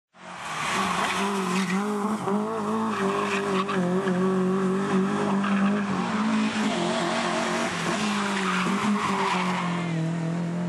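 Rally car engine running hard at a high, steady, slightly wavering pitch, over a loud rushing noise with scattered crackles. The sound comes in suddenly at the very start.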